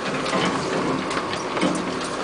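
Inside a 4x4 crawling along a rough, overgrown track: a low engine hum under a steady run of rattles, clicks and knocks from the vehicle as it lurches over the uneven ground.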